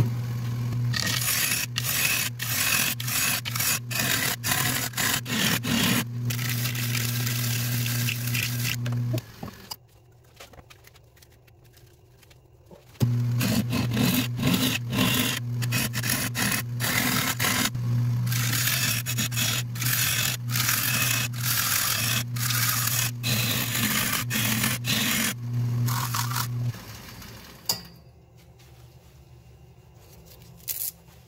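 Wood lathe running with a steady motor hum while a turning tool cuts and scrapes the inside of a spinning shoestring acacia crotch bowl, in long rasping stretches. The lathe stops about nine seconds in, starts again about four seconds later, and stops a few seconds before the end.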